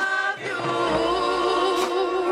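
A high school marching band sounding a slow, sustained chord with a slight waver. The chord breaks off briefly and a new one is held from about half a second in.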